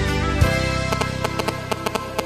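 Instrumental karaoke backing music with no singing: held chords, then from about half a second in a run of quick, evenly spaced notes, fading slightly.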